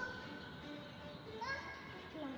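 Faint background voices, children's among them, with two short rising calls: one at the start and one about one and a half seconds in.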